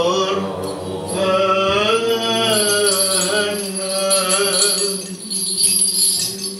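Byzantine chant sung in long held notes that slowly rise and fall, with the small bells of a swinging censer jingling throughout.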